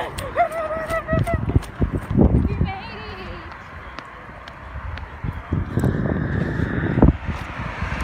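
A high-pitched voice calling out without words in the first second and a shorter cry about three seconds in, over irregular low thumps and rumble, typical of wind and handling on a hand-held phone microphone.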